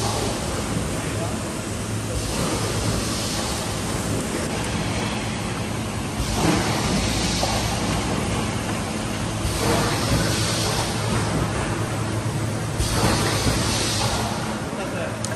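Machinery of a yogurt filling and packing line running: a steady wash of mechanical noise over a constant low hum, the hiss swelling and easing every few seconds.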